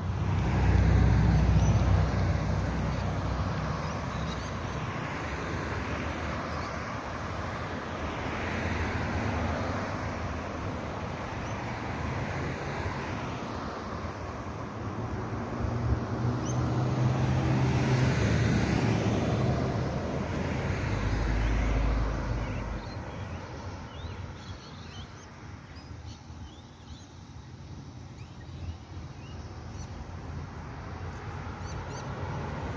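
Road traffic: cars passing on the street, a steady wash of tyre and engine noise that swells near the start and again from about 16 to 22 seconds in, then fades.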